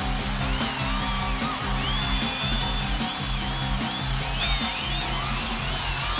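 Live rock and roll band playing an instrumental passage: electric guitar over a steady, driving bass and drum beat, with high sliding notes from about half a second in.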